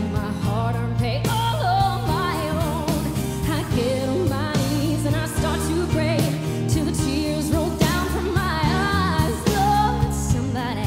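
A woman singing into a microphone over instrumental backing music; her voice wavers and slides in pitch across sustained low backing notes.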